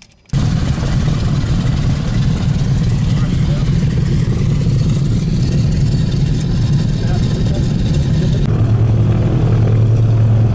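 Douglas C-47's twin Pratt & Whitney R-1830 radial engines running, heard from inside the cabin: a loud, steady low drone that cuts in suddenly just after the start. Near the end the low hum grows stronger as the aircraft begins to taxi.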